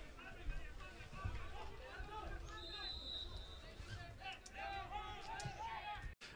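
Faint on-pitch sound of a football match: distant players' and spectators' shouts and calls over a low rumble, with a brief faint high steady tone about halfway through.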